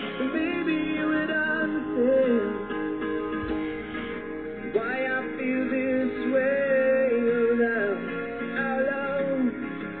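A song with electric or acoustic guitar and singing, played over the radio; the sound is dull, with no highs.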